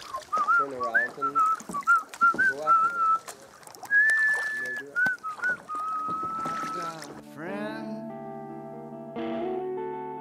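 A man whistling a tune, with bits of voice and laughter, until about seven seconds in. Then background music with guitar and keyboard notes starts after a brief rising sweep.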